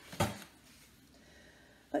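A picture book's page turned once: a short papery rustle about a quarter second in.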